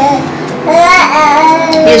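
A high voice sings drawn-out notes, wavering about a second in and then held steady. A woman starts speaking right at the end.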